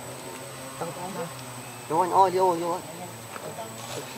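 A young macaque's quavering whimper: a short, weak call about a second in, then a louder wavering cry lasting just under a second about two seconds in.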